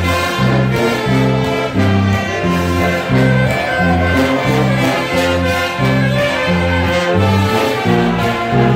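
A brass band of trumpets and tubas playing an upbeat gospel hymn. A bouncing bass line alternates between two low notes about twice a second under the melody.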